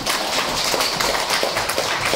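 Audience applauding: steady, dense clapping of many hands.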